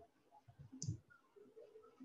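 Near silence, room tone, with one short, faint click a little under a second in.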